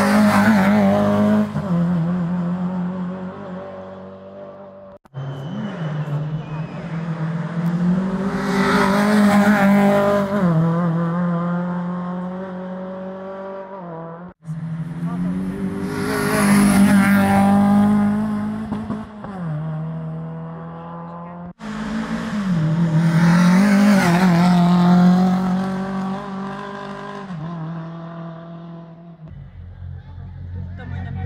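Rally cars passing one after another at speed, engines revving hard through the corner, the first an orange Lada 2101. Each pass swells to a peak and fades, with about four passes and abrupt breaks between them.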